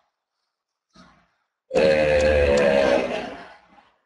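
A man's voice holding one long, wordless hesitation sound, starting about halfway in and fading out after about two seconds.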